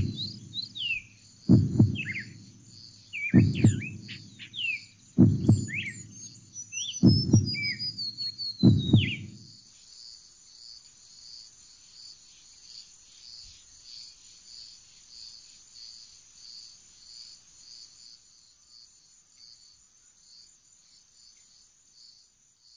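Forest ambience: birds chirping and an insect calling in a steady pulsing trill, with six deep thumps about two seconds apart over the first nine seconds. After the thumps and bird calls stop, the insect trill goes on alone, fading.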